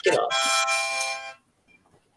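A loud, steady horn-like tone held for about a second, then cut off.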